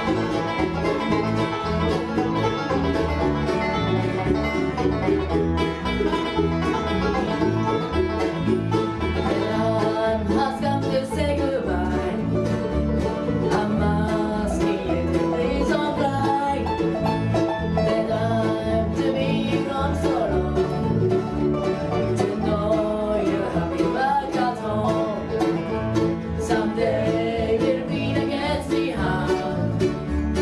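A bluegrass band playing live: banjo, fiddle, mandolins and acoustic guitars together, with a steady beat.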